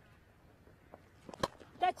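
Cricket bat striking the ball: a single sharp crack about a second and a half in, over faint ground ambience, from a well-struck shot that the commentators call a good stroke.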